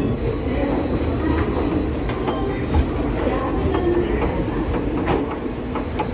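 Passenger train coach rolling slowly along a station platform, heard from an open door: a steady rumble of wheels on rail, with scattered clicks as the wheels cross rail joints.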